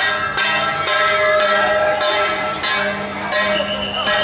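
Procession percussion of ringing metal, gongs or bells, struck in a steady beat about twice a second over a crowd.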